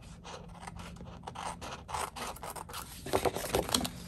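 Scissors snipping a sticker off at the edge of a planner page: a string of small crisp cuts, louder and closer together about three seconds in.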